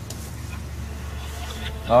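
Low steady rumble of a vehicle's engine running, heard from inside the cabin.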